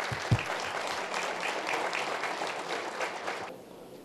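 Audience applauding, with a low thump just after the start; the clapping dies away about three and a half seconds in.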